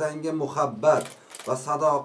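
A man speaking, with a few short, sharp high-pitched sounds about a second in.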